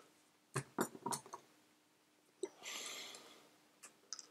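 Small clicks and taps of plastic parts and small screws being handled on a tabletop as a plastic current-clamp housing is taken apart. A short scraping rustle comes about two and a half seconds in, with a last click near the end.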